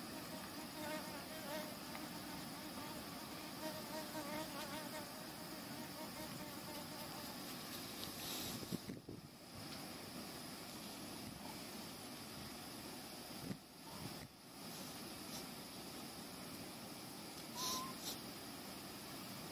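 Steady insect buzzing over quiet outdoor ambience, with a wavering buzz in the first few seconds and a brief sharp sound near the end.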